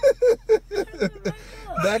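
A man's voice in short bursts and soft chuckles inside a car, ending with a louder spoken word, over a steady low hum.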